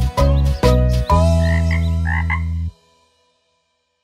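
The end of a children's song: a final low note is held while a cartoon frog croaks a few times over it. Then everything stops, about three seconds in.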